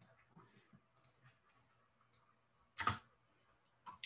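Faint clicking of a computer mouse and keys, a few light clicks at first, then one louder knock about three seconds in and another click just before the end.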